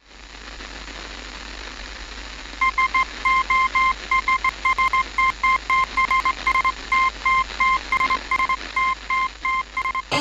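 Radio static fading in, then a single steady tone beeping in an uneven run of short and long pulses, like Morse code signalling over the static.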